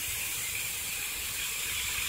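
Lawn sprinkler spray falling on grass, a steady even hiss.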